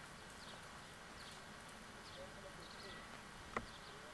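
Faint outdoor ambience: small birds chirping, short high chirps repeated every half second or so, with faint distant voices. A single sharp click about three and a half seconds in.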